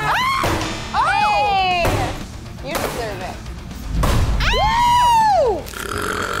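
Excited high-pitched whoops and cheers from a small group over background music, with a low thud about four seconds in.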